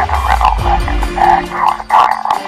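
An electronically disguised, distorted voice on a phone call speaking a riddle in short bursts, over low sustained music notes.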